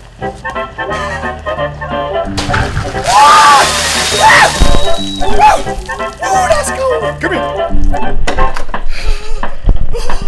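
A bucket of ice water poured over a person: a loud rush of splashing water lasting about two and a half seconds, starting a couple of seconds in, over background music.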